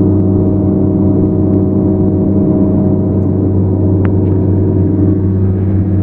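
Feller buncher running steadily with its disc saw head spinning, heard from inside the cab: a loud, even machine drone with several steady tones, as the saw's wind is used to blow snow off a pickup.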